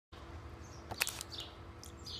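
Faint, short bird chirps over steady background noise with a low hum, and a brief sharp click about a second in.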